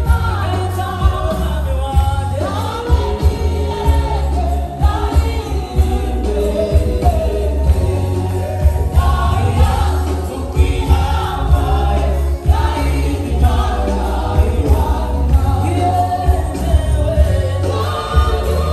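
A gospel choir and live band performing a praise song, with sung melody lines over heavy bass and a steady drum beat.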